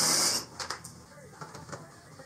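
Cordless drill/driver with a T27 Torx bit running for about half a second at the start as it spins out a panel fastener, followed by a few small clicks and handling noises.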